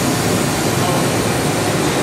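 Steady hiss and hum of a 2011 Makino V22 vertical machining centre running its spindle warm-up cycle at 3000 RPM.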